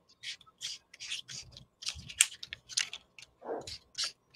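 Marker writing on paper plate pieces: a quick series of short, scratchy strokes, about three a second.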